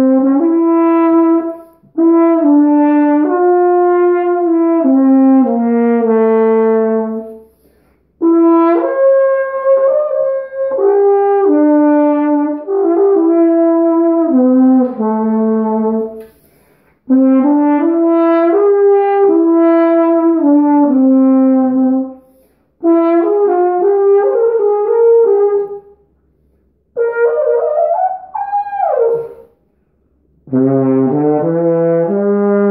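Carl Fischer ballad horn, a flugelhorn-like valved brass horn, played solo: a slow melody of held notes in several phrases with short breaths between them, and a note that bends down and back up near the end.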